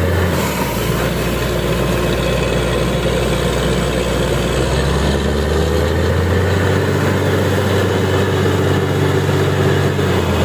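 Truck-mounted borewell drilling rig running steadily under load: its engine and compressor drone, with a continuous rush of compressed air blowing wet cuttings out of the borehole. The engine note shifts slightly about halfway through.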